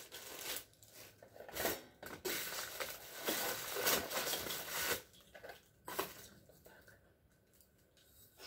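Thin plastic packaging bags crinkling and rustling as they are pulled off small parts, in bursts for about the first five seconds. This is followed by a few light handling knocks and then near quiet.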